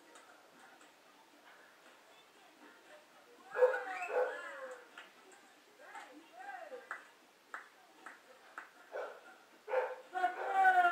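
A small dog yipping and whining. After a quiet start come two louder calls about four seconds in, then a rising-and-falling whine and a string of short yips.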